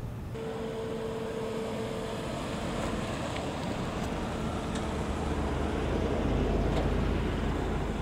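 Minivan taxi driving up and pulling in: a steady engine and tyre rumble that grows louder and deeper toward the end. A steady hum fades out about three seconds in.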